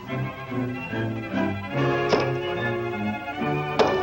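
Orchestral cartoon score with brass over a stepping bass line, with a sharp knock about two seconds in and another near the end.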